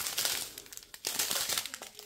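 Small plastic bags of diamond-painting drills crinkling as they are handled, loudest in the first half second and then trailing off into scattered faint rustles.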